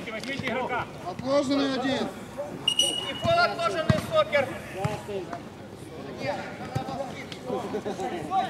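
Men's voices calling out across a football pitch, with one short, steady referee's whistle blast about three seconds in, stopping play, and a couple of sharp ball knocks soon after.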